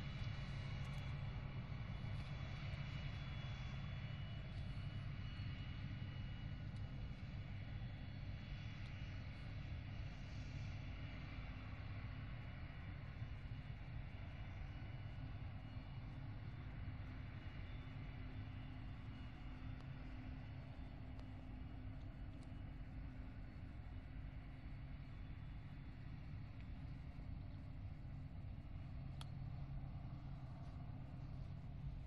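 Krone Big X forage harvester chopping maize, with tractors running alongside: a continuous, steady engine drone with a thin high whine above it.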